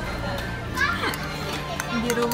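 Indistinct background voices, including children's, over background music, with a short burst of voice about a second in.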